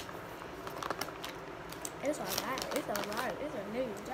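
Plastic candy bag crinkling in scattered short clicks as a hand picks gummies out of it. From about halfway, a person's voice, without clear words, rises and falls over it.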